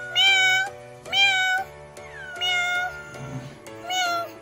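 Kitten meowing: three calls about a second apart, each about half a second long, with a fourth starting right at the end. Background music runs underneath.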